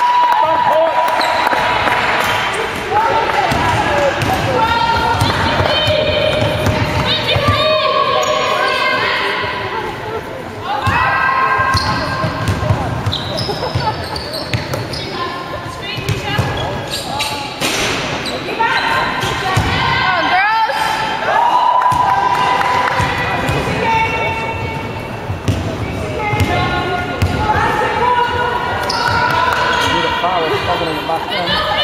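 Indoor basketball game: the ball bouncing on the wooden court, many short high squeaks from shoes on the floor, and players' voices, all echoing in a large sports hall.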